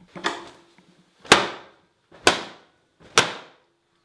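Four brisk wiping strokes across a glass-ceramic hob, about one a second, each starting sharply and fading quickly, as spilled powder is cleared off the glass.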